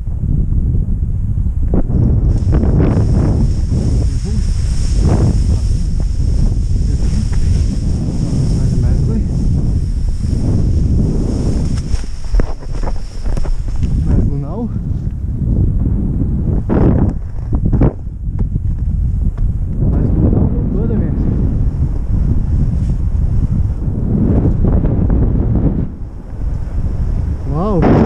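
Strong airflow buffeting the microphone as a paraglider launches and flies: a continuous low rumbling roar of wind noise. A high hiss lies over it for the first half, from about two seconds in until about fourteen seconds.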